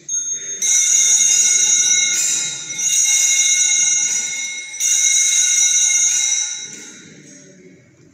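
Altar bells, a cluster of small Sanctus bells, shaken three times in long bright rings that fade out near the end: the bell that marks the elevation at the consecration of the Mass.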